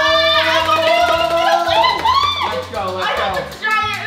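A man and a woman shouting and screaming in excitement, one long held shout over the first second and a half and then shorter yells, over background music with a steady bass beat.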